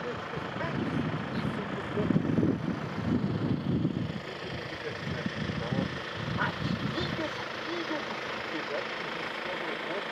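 Indistinct voices talking, loudest a couple of seconds in, over a steady background noise.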